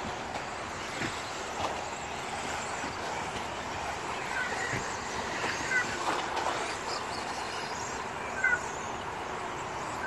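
Radio-controlled 2WD buggies racing round a track: a steady mechanical noise with a few brief rising whines now and then as the cars accelerate.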